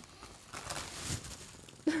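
Plastic bags crinkling faintly and irregularly as they are handled.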